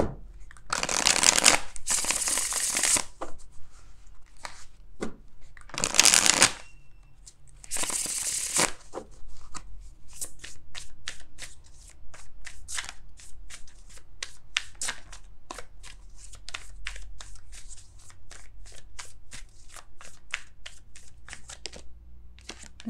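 A tarot deck being shuffled by hand. There are three long shuffling runs in the first nine seconds, then a quick series of short card strokes, about three a second, for the rest.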